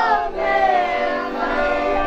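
Children's choir singing a folk song with long held notes, accompanied by an accordion.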